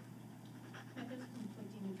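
Faint, distant speech of a reporter starting a question away from the microphones, over a steady low room hum.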